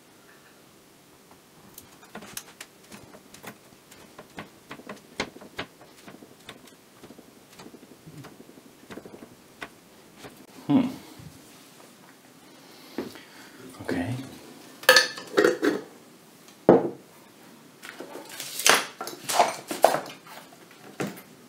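Small hard parts and tools being handled and set down on a workbench: a run of light clicks and taps, then louder knocks and clatter in the second half.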